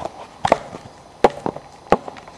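A few sharp knocks, spaced irregularly about half a second apart, over a low background.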